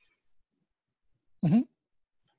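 A man's brief 'mm-hmm' of acknowledgement, rising in pitch, about one and a half seconds in after a silent gap.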